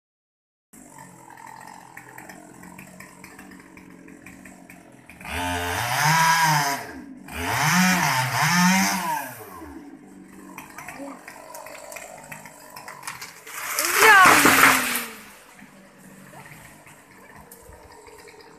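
Small two-stroke chainsaw, a Stihl 020T, idling, then revved up and back down three times about five to ten seconds in. A louder, noisier full-throttle burst follows around fourteen seconds in.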